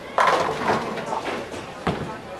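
Bowling ball striking the pins: a sudden loud crash of wooden pins clattering and scattering that dies away over about a second and a half, followed by one more sharp knock near the end.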